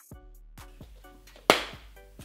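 Background music of short plucked notes, with one sharp, loud hit about one and a half seconds in that quickly fades.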